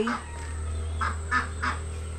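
A crow cawing three times in quick succession, about a second in, over a low steady rumble.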